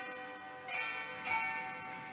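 Instrumental passage of a Polish folk ballad on a hammered dulcimer (cymbały): single notes struck and left to ring, with two fresh strikes about two-thirds of a second and one and a third seconds in.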